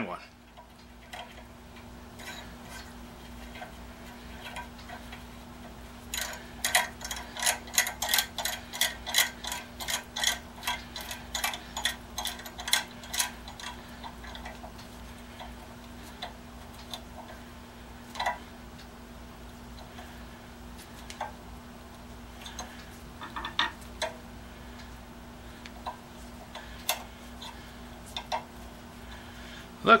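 Metal bolt parts clicking as they are turned and handled by hand at a bench vise: a quick run of small ticks, about four a second, from about six to thirteen seconds in, then scattered single clicks and taps, over a steady low hum.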